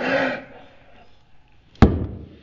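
Stainless steel cocktail shaker of espresso shaken with a short rattling swish at the start, then set down on the countertop with one sharp knock near the end.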